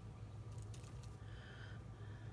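Quiet, steady low hum, with a few faint ticks about half a second in and a short, faint squeak just after the middle.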